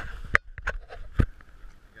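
A few sharp knocks and slaps in quick succession over about a second: a freshly caught jack crevalle thrashing as it is handled on a small boat.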